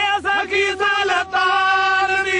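Men singing a Punjabi folk ballad with bowed sarangi accompaniment over a steady drone. The melody bends through short broken phrases, then settles into a long held note.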